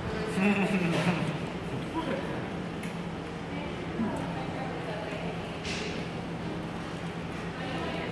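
Two people eating big breakfast sandwiches: quiet chewing and mouth sounds over a steady low hum in the room. A brief hummed "mm" comes about half a second in, and there is a short soft rustle near six seconds.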